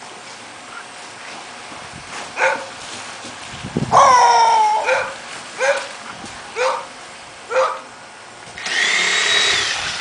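A dog barking several times, about once a second, with one longer drawn-out falling bark about four seconds in. Near the end comes a higher whine lasting about a second.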